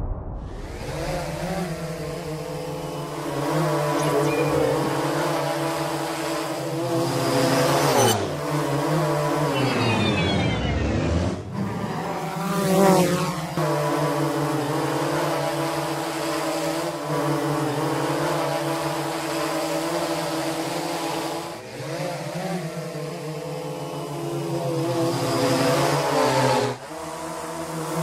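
Quadcopter drone's motors and propellers buzzing steadily at one pitch. The pitch slides down and back up near the middle, and dips briefly twice later on.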